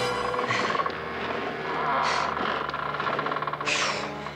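Sound effect of a heavy rope-bound chest scraping up a rock face as it is hauled, in three scraping pulls about a second and a half apart.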